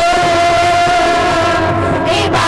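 An amplified voice holding one long, slightly wavering note through a loudspeaker, with a steady low hum beneath it.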